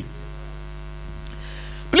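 Steady electrical mains hum with a ladder of evenly spaced overtones, carried through the microphone and sound system.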